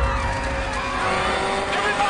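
A crowd of people screaming together in panic, many wavering high voices overlapping and growing denser in the second second, over a held low tone from the soundtrack.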